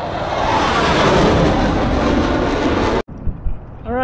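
A loud rushing whoosh, the logo-intro sound effect, filling the air and cut off abruptly about three seconds in. Then a short stretch of open-air parking-lot ambience with a few faint clicks.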